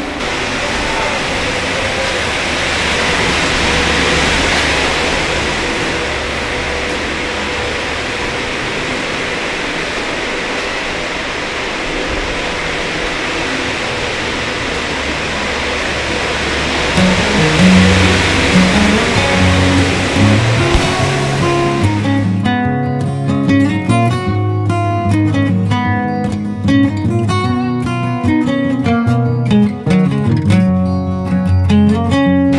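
A steady rushing noise with no clear pitch fills the first half or so, then background acoustic guitar music fades in and plays strummed for the last third.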